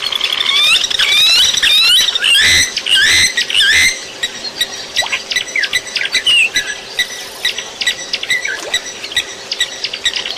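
A rapid run of shrill, swooping animal squeals, loudest in the first four seconds, then scattered short chirps and ticks.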